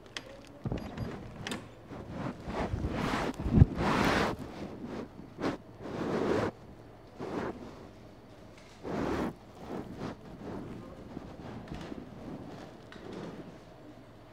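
Irregular rustling and handling noises, with a sharp thump about three and a half seconds in, then quieter rustles.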